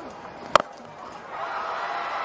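A single sharp crack of a cricket bat striking the ball about half a second in, followed by the stadium crowd's noise swelling.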